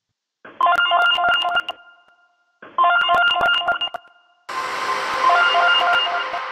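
A lo-fi electronic FX sample: a ringtone-like pattern of short synth beeps, heard three times with silence between. The first two are thin and dull, and the third is layered with hiss.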